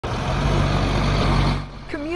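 Military cargo truck driving through shallow floodwater: a steady low diesel engine note under the hiss of water spraying off its tyres, cutting off suddenly about one and a half seconds in. A voice starts just before the end.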